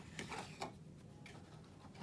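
Small cardboard gift box being opened by hand: a few light clicks and rustles of the box flaps and lid in the first second.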